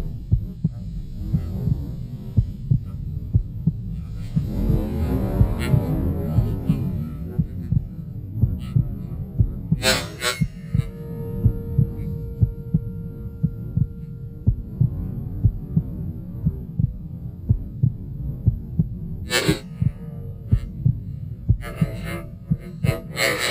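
A hunter's footsteps through snow and tall grass, picked up by a camera mounted on the shotgun. They come as steady low thumps about two a second. Two brief scrapes stand out, one about halfway through and one near the end.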